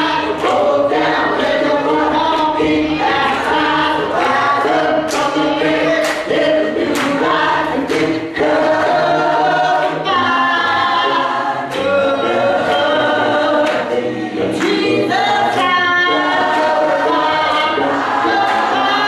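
Gospel choir singing together, with a lead singer out front, over a steady beat about twice a second.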